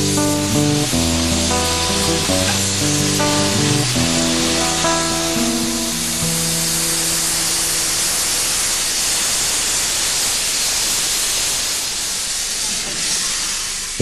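A steam locomotive venting steam in a steady hiss from around its cylinders, heard under background music at first and alone from about six seconds in, once the music fades out.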